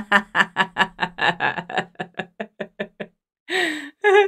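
A woman laughing: a quick run of even 'ha' pulses, about five a second, that trail off over some three seconds, then a brief breathy sound near the end.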